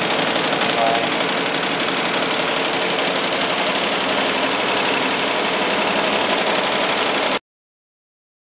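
Commercial embroidery machine running, a loud, fast, steady mechanical clatter of needles stitching, which cuts off abruptly about seven seconds in.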